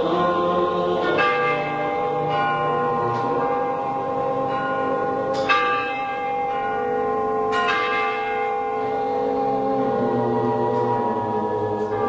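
Bell tones ringing in an instrumental music passage, with three fresh strikes about a second in, at five and a half seconds and near eight seconds, each left to ring over held notes.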